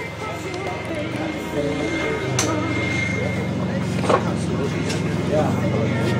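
Electric ducted fans of a radio-controlled model airliner flying overhead, a steady whine and hum that grows louder about two seconds in, with people talking nearby.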